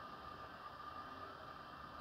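Faint steady room tone: a low hiss with a thin, steady high hum.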